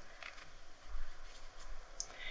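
Faint soft brushing: a makeup powder brush sweeping powder over a silicone prosthetic in its mould, in a few light strokes.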